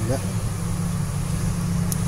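A steady low hum runs under the window, with one short word spoken at the start and a short, sharp click near the end.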